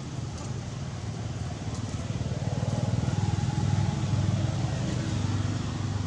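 A motor vehicle's engine running, a low steady rumble that grows louder through the middle and eases off near the end.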